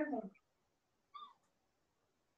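A man's speech trailing off, then quiet with one brief, faint high-pitched call about a second in.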